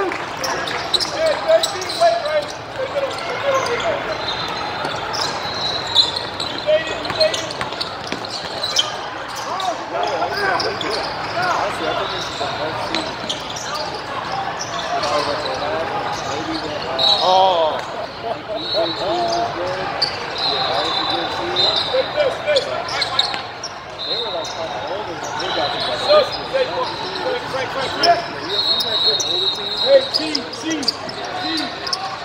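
Basketball game in a large, echoing gym: the ball bouncing on the court and sneakers giving short, repeated squeaks, with players and spectators shouting indistinctly throughout.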